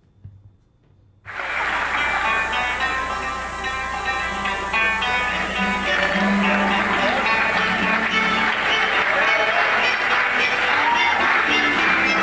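Live recording of a folk band with acoustic guitars starting to play, cutting in abruptly about a second in after near silence and then continuing steadily.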